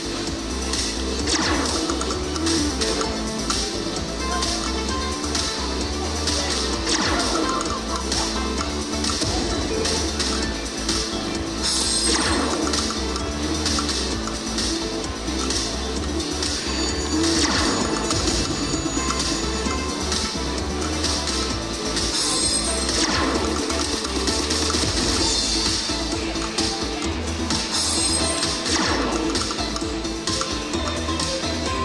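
Ultimate Fire Link Glacier Gold slot machine playing its bonus music during the hold-and-spin feature, with a rushing whoosh about every five seconds as the bonus reels respin. A steady low hum lies underneath.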